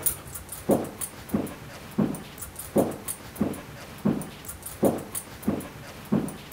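A scent-detection dog breathing audibly as it works, short breaths in a steady rhythm of about three every two seconds, with faint light clicks over them.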